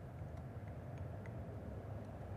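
A few faint drips of tea falling from a clay gaiwan into a glass pitcher of tea, over a low steady room hum.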